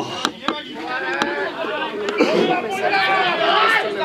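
Several people's voices talking and calling out over one another, with three sharp knocks in the first second or so.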